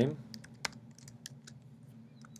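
Typing on a computer keyboard: a few irregular key clicks, one louder than the rest about two-thirds of a second in.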